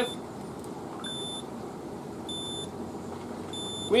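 Electronic beeping from a digital multimeter whose probes are on a golf cart's 48-volt battery pack: three short, high, identical beeps about 1.3 s apart.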